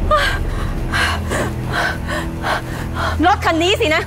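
A woman gasping for breath again and again, about two gasps a second, with a wavering cry near the end, over dramatic background music.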